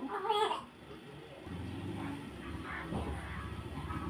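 Newborn baby crying in short wails, the loudest a rising cry just after the start and fainter ones about three seconds in.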